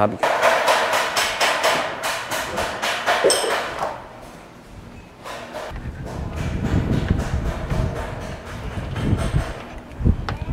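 Footsteps knocking on wooden stair treads as someone climbs a steep wooden footbridge, a series of hollow thuds. From about halfway, wind rumbles on the microphone under the steps.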